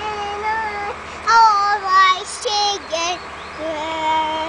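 A young girl singing in a high voice: a string of short phrases of held notes, some sliding up or down in pitch, with brief breaks between them.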